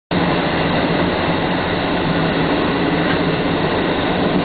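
Interior running noise of a JR Hokkaido 785 series electric multiple unit travelling along the track: a steady rumble of wheels on rail with a low constant hum, heard from inside the car.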